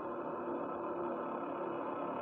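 Sustained sound-design drone: a steady hum with a few held tones and no beat, at an even level.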